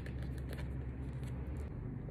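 Oracle cards being handled as one is drawn from the deck: a few faint ticks and rustles over a steady low hum.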